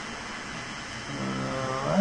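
A man's low, drawn-out hesitation sound ("uhh") starting about a second in and growing louder, over a steady faint hiss.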